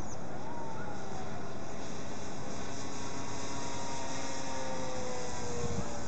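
Radio-controlled model P-51 Mustang flying overhead, its motor a thin whine that slides down in pitch as it passes, twice, over a steady hiss.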